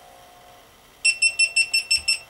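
GoPro HERO2 camera's built-in beeper sounding a rapid run of short, high-pitched beeps, about six a second, starting about a second in: the camera's power-off signal as it shuts down.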